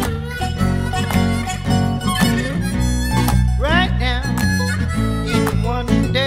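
Band music in an instrumental break: harmonica playing over guitar with a steady beat, bending notes about halfway through.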